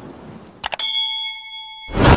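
Subscribe-button sound effect: two quick mouse clicks, then a bright notification-bell ding that rings on for about a second. Music cuts in loudly at the very end.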